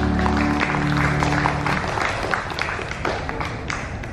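Audience applauding with hand claps as the song's final held chord of backing music fades out about two seconds in.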